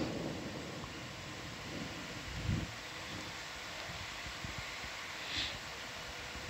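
Steady low background hiss of an open microphone (room tone), with a faint low thump about two and a half seconds in and a brief soft hiss near the end.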